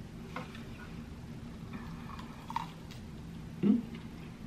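Quiet eating sounds: a few faint clicks and chewing as waffle fries are dipped in sauce and eaten, over a low steady hum. A short low 'mm' from one of the eaters comes near the end.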